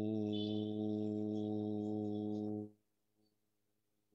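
A man's voice chanting the 'U' (ukara) vowel of Om on one steady low note for nearly three seconds, stopping abruptly; a much fainter held tone lingers after it.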